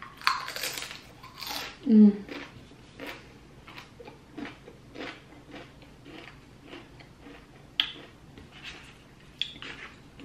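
A guacamole-dipped tortilla chip bitten with a loud crisp crunch, then chewed with short crunches about twice a second. A hummed 'mm' comes about two seconds in.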